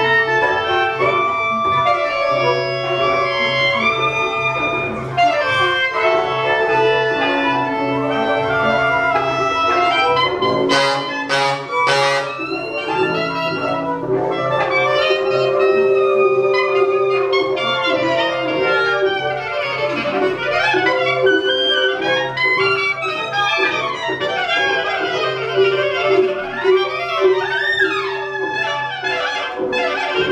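Large jazz ensemble of horns and reeds (trumpet, trombone, saxophones and clarinets) playing overlapping sustained lines over a long-held low note. Three sharp percussive hits come about eleven seconds in, after which the reed and brass lines turn busier and weave around one another.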